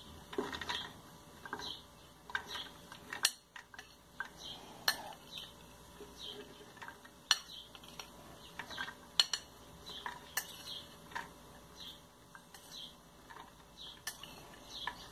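Metal spoon scraping and clinking against a ceramic bowl as fresh corn kernels are pushed off into a plastic blender jar: irregular light taps and clinks, with a handful of sharper ones.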